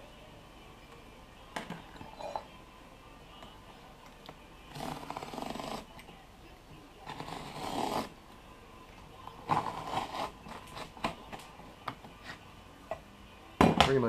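Razor knife slicing through a flattened cloth fire hose along a metal square: two cutting strokes of about a second each, about five and seven seconds in. Light clicks and taps from tools being handled and set down come before and after.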